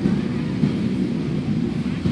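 Motorcycle engines idling together, a steady low drone.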